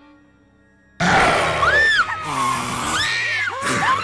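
Horror-film soundtrack: faint soft music, then about a second in a sudden loud burst of sound as an old woman screams, with two shrieks that rise and fall in pitch over a noisy blast of sound effects.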